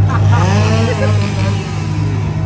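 Loud, steady low droning of a scare zone's soundtrack, with a person's voice calling out in swooping pitch over it during the first second or so.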